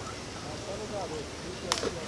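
Low voices talking, with one sharp click near the end.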